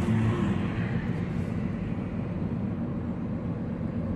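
Steady engine and road noise inside a moving car's cabin: an even low rumble with hiss.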